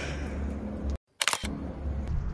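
Camera shutter click as the photo is taken: one short, sharp snap a little past a second in, right after a brief drop to dead silence. A low steady hum runs underneath.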